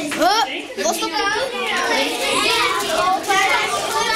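Many children talking and calling out over one another at once, a steady chatter of high voices overlapping.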